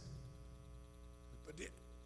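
Faint, steady electrical mains hum from the microphone and sound system, with one short spoken word near the end.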